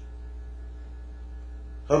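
Steady low electrical mains hum from the sound system, with a man's speaking voice starting again at the very end.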